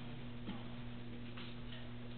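Faint room tone: a steady low hum with a few soft ticks.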